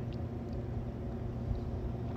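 Steady low rumble with a constant low hum underneath, and no other distinct event.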